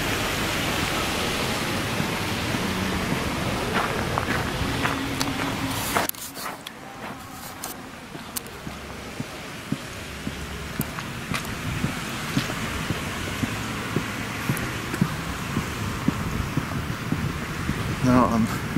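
Outdoor street ambience: a steady rushing noise that drops suddenly about six seconds in to a quieter hush, with faint scattered ticks.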